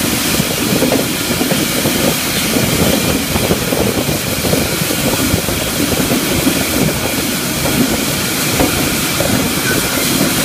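Steel mill roller conveyor and reheat furnace running, carrying a red-hot steel billet. A loud, steady hiss with an irregular low rumbling clatter underneath.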